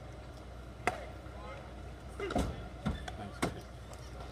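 A baseball smacking into the catcher's mitt with a sharp pop about a second in, then a short shout and two more sharp knocks.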